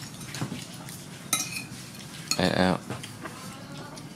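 Metal spoons scraping and clinking against ceramic plates and bowls during a meal, with a sharp ringing clink about a second in. A brief pitched sound, about half a second long, comes a little past the middle and is the loudest thing heard.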